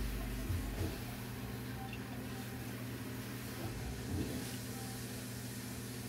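Steady low electrical hum of aquarium equipment.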